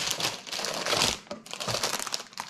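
Clear plastic bags of model-kit parts runners crinkling and crackling as they are handled and lifted out of a cardboard box, with a busy run of small irregular clicks.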